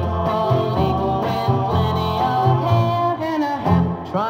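A 1962 pop single playing from a 45 rpm vinyl record on a turntable, in a passage between the sung lines of the lead vocal.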